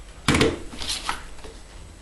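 Small glued chipboard boxes knocking together and set down on a board as they are lined up in a row: a sharp clatter about a third of a second in, then a few lighter taps.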